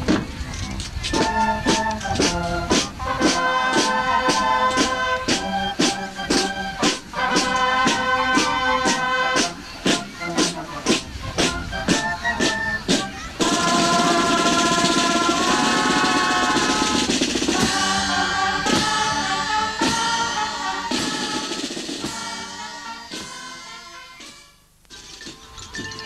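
Marching band playing: drums beat a steady march rhythm under a melody on wind instruments. About halfway through the band swells into a fuller, louder passage, then the sound fades away near the end.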